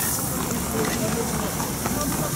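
A garden hose spraying water over a horse's coat, with people talking in the background.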